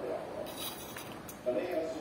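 A few light clinks of a metal fork on a plate, under faint voices in the background.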